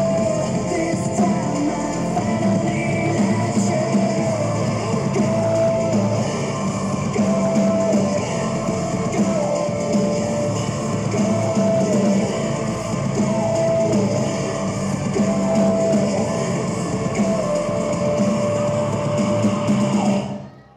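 Rock music with electric guitar, a held melody note stepping between two pitches every couple of seconds over a steady, dense backing.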